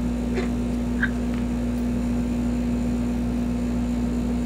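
A steady low hum with one constant tone running through it, and two faint short chirps about half a second and a second in.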